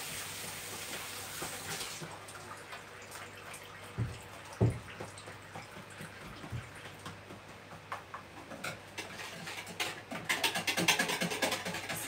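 A tap runs for the first two seconds and stops suddenly. A few soft knocks follow, and near the end a spoon clicks rapidly against a bowl as a mixture is stirred by hand.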